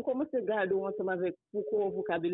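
Speech only: a person talking, with words too unclear to make out, pausing briefly about one and a half seconds in.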